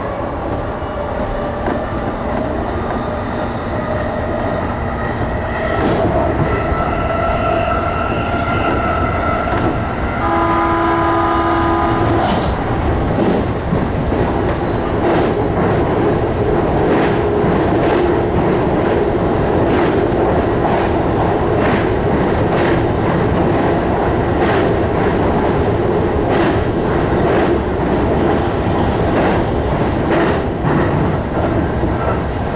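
JR Chuo Line electric commuter train heard from the cab, its motors whining and rising in pitch as it gathers speed, wheels clicking over rail joints. About ten seconds in, a two-second horn sounds, and after it the running noise grows louder and steadier as the train crosses a bridge.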